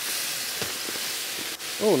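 Fine black aquarium gravel pouring from a bag into an empty glass aquarium, a steady hissing rush of grains landing on the glass bottom.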